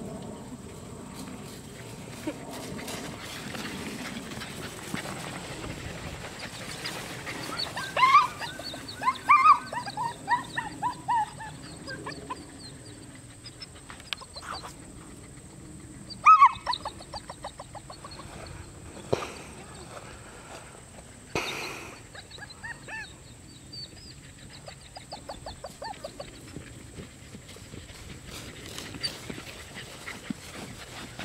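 German Shepherd puppies yapping in quick runs of short high yaps, a loud burst about eight seconds in and another around sixteen seconds, with fainter yaps later.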